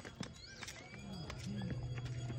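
Footsteps of people climbing stone steps in slip-on sandals: sharp slaps on stone, about two a second.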